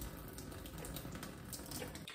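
Pasta water poured from a saucepan in a thin, steady stream into a kitchen sink, splashing on the basin.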